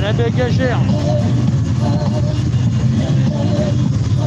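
Several motorcycle engines idling together in a stopped column of bikes: a steady low rumble.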